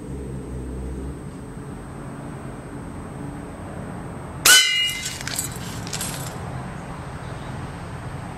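A lead-free airgun pellet striking a stainless steel bowl: one sharp metallic clang with a brief ringing of several clear tones, followed by a few smaller rattling clatters as the bowl is knocked away.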